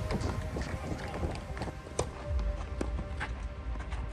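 Tennis rally on a clay court: several sharp racket-on-ball hits, the loudest about halfway through, with players' footsteps, under background music.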